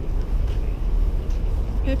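Low, steady outdoor rumble, with a woman's voice beginning to speak near the end.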